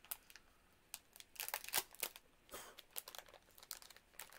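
A small plastic snack wrapper crinkling and crackling as it is worked open by hand. There is a brief quiet at first, then a run of crackles from about a second in.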